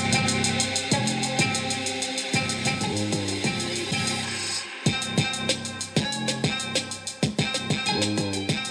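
Copyright-free music with a drum-kit beat and quick steady cymbal ticks, played over Bluetooth through the Milwaukee M12 radio (2951-20) and picked up by the camera microphone. The music drops out briefly about halfway through, then the drums come back in.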